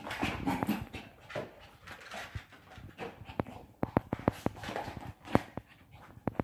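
Shih Tzu puppy running and scrambling in play, its claws clicking and scrabbling on a tile floor. The sound is irregular scuffling with scattered sharp clicks, and a cluster of louder clicks between about four and five and a half seconds in.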